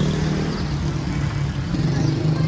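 Street traffic: a nearby motor vehicle engine running with a steady low drone over the general noise of road traffic.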